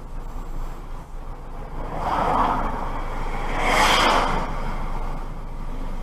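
Car on the move with steady road and engine noise, and two swelling whooshes, the louder one about four seconds in.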